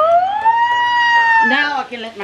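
A woman's high-pitched vocal squeal, rising in pitch and held for about a second and a half, then dropping into spoken words near the end.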